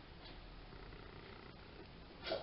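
Very faint room noise, with a single faint tick about one and a half seconds in.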